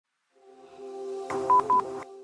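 Short intro logo jingle: a held synth chord swells in, then a soft hit about halfway through followed by two quick high beeps.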